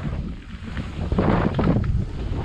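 Wind buffeting the microphone of a bike-mounted action camera, over the low rumble of tyres and suspension on a dirt singletrack. The noise swells about a second in.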